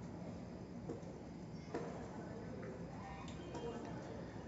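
A few faint clicks from an orange plastic hand-press juicer being handled, its lever handle being lifted, over a quiet room background.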